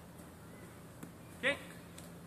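A man shouts the count word 'kick' once, about one and a half seconds in. Otherwise there is only quiet outdoor background with a faint steady hum.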